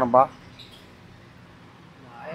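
A man's voice for a moment at the start, then faint steady background noise with no distinct event.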